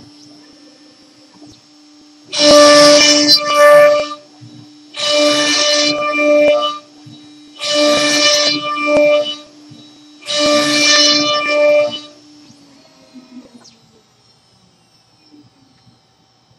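CNC router spindle running with its bit cutting into a rotating wooden cylinder on the rotary axis: four loud cutting bursts, each one and a half to two seconds long, as the bit bites into the wood and comes back out with each turn. The spindle's steady whine drops away after the last burst.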